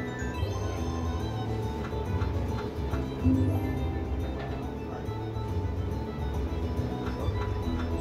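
Slot machine game music and jingles playing as the reels spin through a run of free spins, over a steady low beat, with a low thud about three seconds in.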